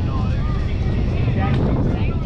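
Wind rumbling steadily on the camera microphone, with distant voices of players calling across the softball field.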